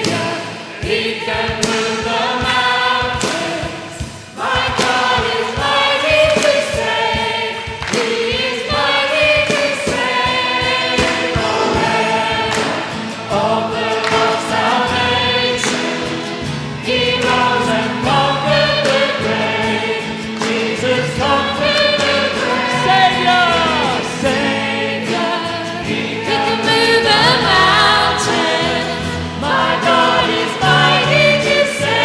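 Live worship band playing a worship song, with keyboard and electric and acoustic guitars, while singers and the congregation sing together.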